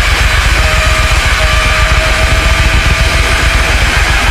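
Loud, dense, distorted mathcore instrumental passage from a full band, chaotic rather than melodic. A single steady high note is held over it from about half a second in.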